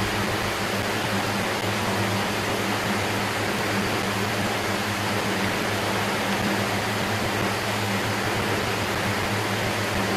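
Steady background noise: an even hiss with a low, unchanging hum.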